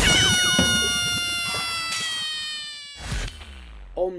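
Edited-in sound effect: a sudden loud hit, then a ringing tone with many overtones that slides slowly down in pitch and fades over about three seconds, ending in a brief whoosh about three seconds in.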